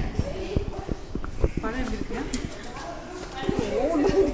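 Quiet voices of people talking, with scattered sharp clicks and knocks throughout.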